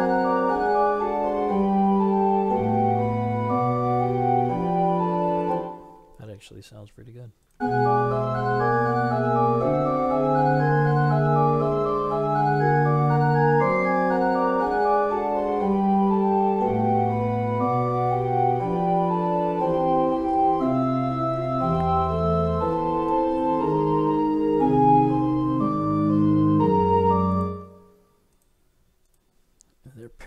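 Computer MIDI playback of a fugue passage on a synthesized pipe organ sound, several contrapuntal lines of held and running notes sounding together. The playback stops about six seconds in, restarts a moment later and stops again a couple of seconds before the end.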